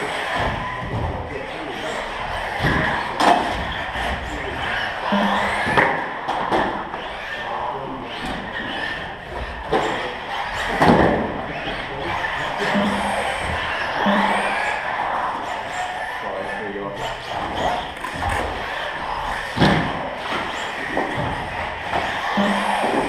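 Radio-controlled off-road buggies racing on a carpet track, with repeated sharp knocks as cars land off wooden jumps and strike the track boards, echoing in a large hall. Voices run underneath.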